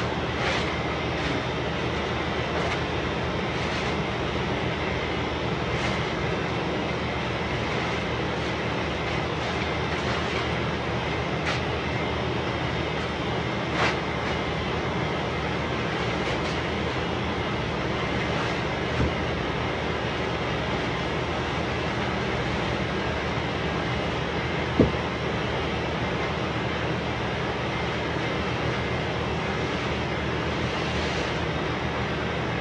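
A steady, even rushing noise from a running machine holds throughout, with a few brief knocks scattered through it.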